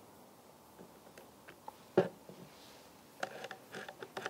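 Saw chain being pulled by hand around the bar of a small cordless chainsaw to spread fresh oil, giving light scattered clicks and ticks, with one sharper click about halfway and a quick run of ticks near the end.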